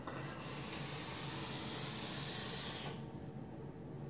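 Sub-ohm rebuildable vape atomizer with a 0.11-ohm dual coil of 22-gauge 316L stainless wire, fired during a long draw. The coils and drawn air make a steady hiss for about three seconds that cuts off suddenly.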